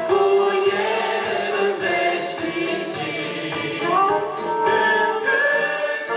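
A church praise group of men's and women's voices sings a hymn together through microphones, with instrumental accompaniment and a steady beat.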